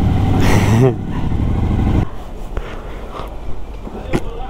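Suzuki V-Strom 1050XT's V-twin engine running at low speed, with a laugh over it; about halfway through the sound drops suddenly to a much quieter engine and street background.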